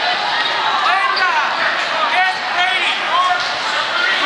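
Wrestling shoes squeaking on the mat: a handful of short, chirping squeaks over steady crowd chatter in a gym.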